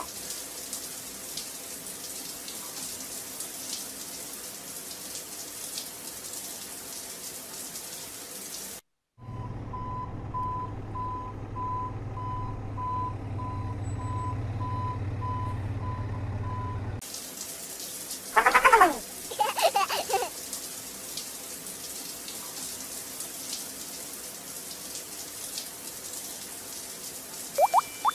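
Toy fire truck's ladder hose spraying a thin jet of water onto a paint tray, a steady hiss of spray. For about eight seconds in the middle this gives way to a low electric hum with a beep pulsing about twice a second.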